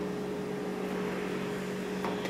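Steady soft hiss of a bran-and-cocoa pancake batter cooking in a dry non-stick frying pan over medium heat, under a constant low hum.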